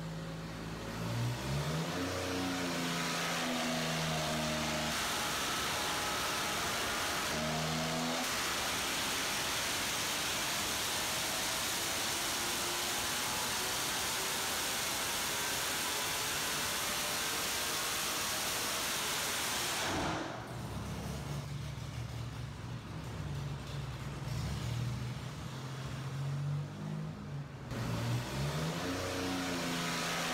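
Supercharged GM 3800 Series 3 L32 V6 with an M90 blower and a Comp Cams camshaft, running on an engine dyno. It idles, revs up and down, then holds a loud full-load pull for about twelve seconds. It drops suddenly back to idle and revs again near the end.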